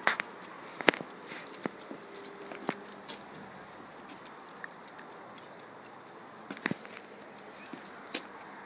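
A few sharp, light clicks and taps, scattered and irregular, over a quiet background; the loudest come about a second in and again near the end.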